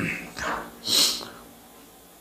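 A man's short, quiet vocal sounds, with a sharp hissing breath or sibilant about a second in, then a brief lull.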